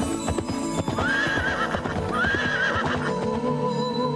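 Galloping horse hooves with two whinnies in the middle, laid over background music. The hoofbeats die away near the end, leaving the music.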